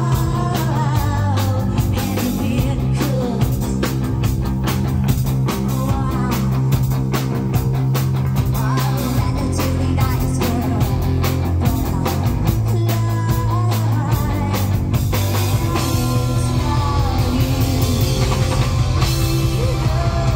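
Rock band playing live, a singer's lead vocal over drums, guitar and bass.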